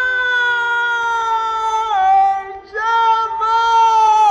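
Azerbaijani mugham singing: a high male voice holds a long note that sinks slightly, drops in pitch about two seconds in, breaks off briefly and comes back with a wavering ornament. A steady accompanying note runs underneath.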